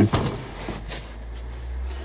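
A low steady rumble, with faint soft pats of vermicompost being firmed into a plastic quarter seed tray with a flat tamper.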